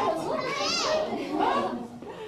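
Several voices talking excitedly over one another, a child's high-pitched voice among them, fading near the end.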